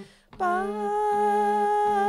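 Harmonium playing the shabad melody, with a voice carrying the tune along with it. The sound breaks off almost to silence at the start, then comes back about half a second in on a long held note.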